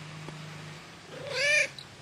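Grey male cat giving one short meow a little over a second in, its pitch rising then falling: a protest at being disturbed from sleep.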